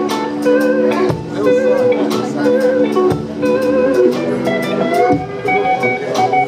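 A live blues band playing. An electric guitar repeats a short lick of wavering, vibrato notes over held chords and a steady drum beat, then bends a note upward a little after four seconds in.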